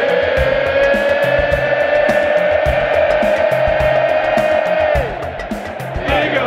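Stadium crowd and band holding one long note over a steady drumbeat. The note slides down and dies away about five seconds in.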